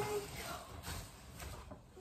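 Tissue paper and a paper gift bag rustling and crinkling in a few short swells as a present is pulled out of the bag.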